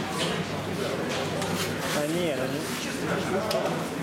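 Indistinct voices of several people talking in a large gym hall, a murmur of conversation with no clear words.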